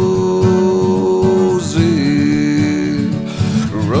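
Song: a man's voice holding a long sung note, stepping down to a lower note about halfway through and sliding up near the end, over strummed acoustic guitar.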